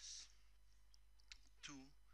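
Computer mouse clicking while a drop-down menu option is selected, one clear click about two-thirds of the way through, over a faint steady low hum.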